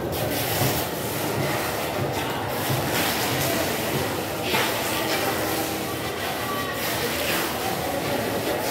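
A large golok knife being drawn through a young tuna's flesh on a wooden table, with a few louder scraping strokes, over a steady background din.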